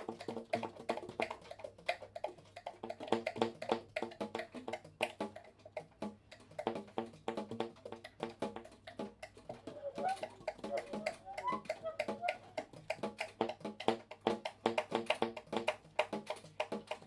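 Baritone and tenor saxophones improvising in short, percussive staccato notes, several a second, with a few brief upward pitch slides near the middle.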